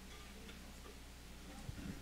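Quiet room tone: a steady low hum with faint ticking, and a few soft low knocks near the end.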